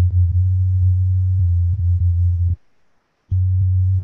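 Low, steady electronic sine tone from a Csound-synthesized student score, playing back loud; it cuts off about two and a half seconds in, leaves a short gap of silence, and comes back near the end.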